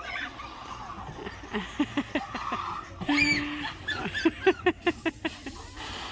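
People laughing and whooping, with one short held call a little past the middle. Near the end comes a quick run of laughing bursts.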